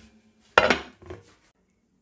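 A stainless steel stockpot lid is taken off and set down: one sharp metallic clank with a brief ring, about half a second in.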